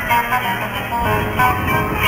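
Two acoustic guitars playing an instrumental passage of Yucatecan trova, plucked notes over strummed chords, with no singing.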